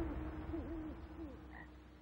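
A music swell fading away under faint night-time woodland ambience, with several short, soft owl hoots in the first second or so.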